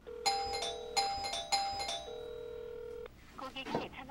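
Electronic apartment doorbell chiming a short run of bright, ringing notes, about four strikes in the first two seconds. Under it, a steady phone ringback tone sounds twice for about a second each: a call ringing out unanswered.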